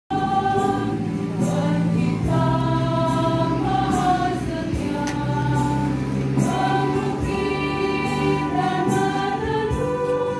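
Church choir singing a hymn in long, held notes.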